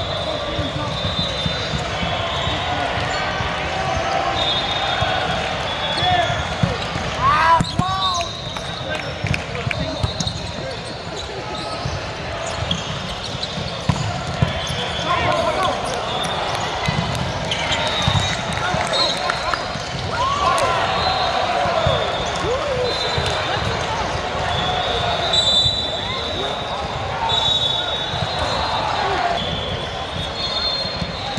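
Busy indoor volleyball hall: a steady hubbub of player and spectator voices, with knocks of volleyballs being hit and bouncing, and short high squeaks recurring throughout.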